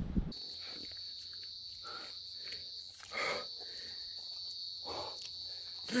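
Insects in the bush trilling: one unbroken, high-pitched trill, with a couple of faint soft sounds in between.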